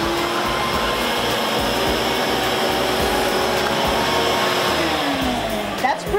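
Craftsman wall-mounted wet-dry vac running, its motor drawing air and sand through the hose attachment. The motor winds down with a falling pitch near the end as it is switched off.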